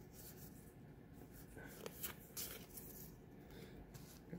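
Faint handling of a stack of Pokémon trading cards as they are slid and flipped through by hand, with a few light clicks and soft rustle around the middle.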